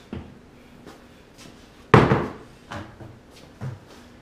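Empty plastic five-gallon pail being handled and set down on a metal frame: a few light knocks and bumps, with one loud hollow thump about two seconds in.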